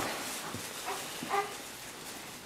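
Newborn baby giving a few brief whimpers, the last a short cry near the end, trailing off from the crying just before.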